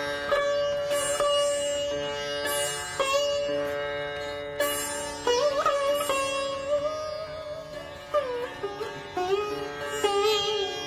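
Sitar playing a slow Hindustani classical melody: single plucked notes about a second apart, several of them bent up or down in pitch by pulling the string. Each note rings on over a bed of steady, sustained tones.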